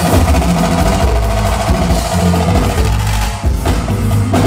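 Pagode baiano band playing live, a loud drum- and percussion-driven groove with a steady low bass line.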